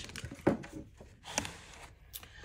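Paper and card being handled on a craft cutting mat: a sharp knock about half a second in and a lighter click about a second later, with soft paper rustling between.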